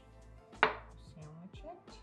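A single sharp knock on a wooden cutting board about half a second in, with a short ring after it, over faint background music.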